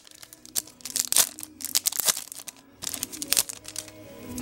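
Foil Yu-Gi-Oh booster pack wrapper being torn open by hand, crinkling and crackling in irregular bursts of rustle.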